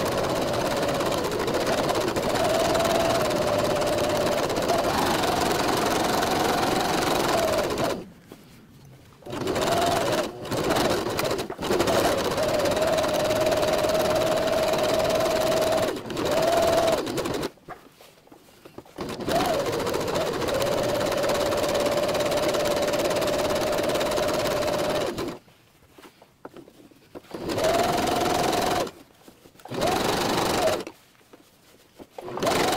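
Electric household sewing machine stitching, its motor running steadily in runs of several seconds and stopping for short pauses between them.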